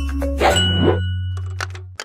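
Logo-sting sound design: a held low bass note that shifts pitch about half a second in, with bright metallic dings struck over it, fading out toward the end.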